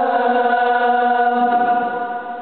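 A man's voice chanting Quran recitation in a melodic style, holding one long, steady note that begins to fade near the end.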